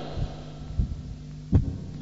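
Steady low hum in a pause of a man's speech, with a few soft low thumps; the last and loudest comes about a second and a half in.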